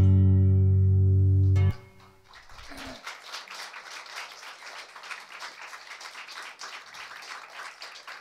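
Acoustic guitar's final strummed chord ringing, then cut off sharply after under two seconds. Light applause from a small audience follows.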